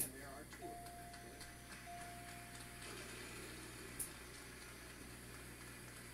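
Television game-show audio heard faintly in the room: muffled speech, a steady high tone held for about two seconds with a brief break in the middle, and a click at the start and another about four seconds in.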